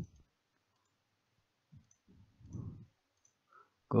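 Mostly quiet room with a few soft, short clicks from a computer mouse, and a brief low muffled sound about two and a half seconds in.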